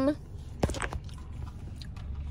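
Close mouth and cup sounds of sipping iced coffee through a plastic straw, with a sharp click about two-thirds of a second in and a few small ticks after, over a low steady rumble of a car cabin.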